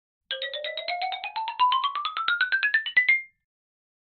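Short musical intro jingle: a quick run of bright, struck electronic notes, about ten a second, climbing steadily in pitch for about three seconds before it stops.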